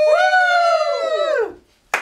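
A loud, drawn-out "woo!" cheer from the family, held on one note and then dropping in pitch as it cuts off about a second and a half in.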